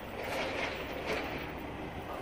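Steady outdoor background noise, a low rumble with a hiss over it, with a couple of faint scuffs about a third of a second and a second in.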